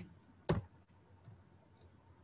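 A single sharp click of a computer mouse button about half a second in, followed by faint room tone.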